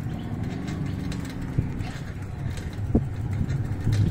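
Motor vehicle running along a road: a steady low rumble with an engine hum that swells and fades over the first couple of seconds, and a short knock about three seconds in.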